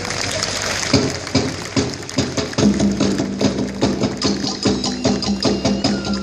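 Polynesian-style dance music, mostly percussion: a fast, busy rhythm of wooden and drum strikes, joined by a steady low held note about halfway through.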